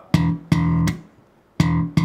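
Enfield Lionheart electric bass slapped with the thumb on the open E string: two notes, a short rest, then two more, each ringing briefly before being muted.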